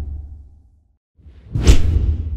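Whoosh sound effects of an animated logo outro: one whoosh fades out in the first half-second, then after a short silence a second, brighter whoosh swells up and peaks near the end, each with a deep rumble under it.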